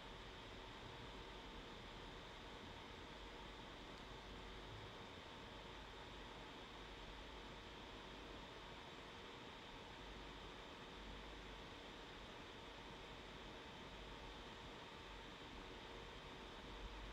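Near silence: a steady, faint hiss of room tone.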